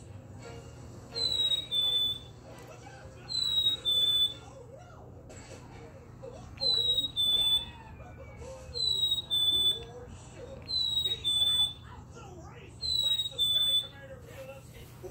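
Plush black-capped chickadee toy squeezed again and again, its built-in speaker playing the chickadee's two-note "fee-bee" whistle six times, each a higher note stepping down to a slightly lower one.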